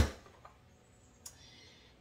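Vidalia Chop Wizard hand chopper pushed down once through tomatoes: a single sharp thump right at the start that dies away within half a second. Then near silence, with one faint click a little past a second in.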